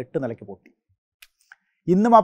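A man speaking in Malayalam trails off within the first second, pauses with two faint clicks, and starts speaking again just before the end.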